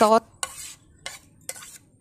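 A metal spoon scraping chopped fresh chilies and lemongrass off a plate into a ceramic bowl, in about four short scrapes.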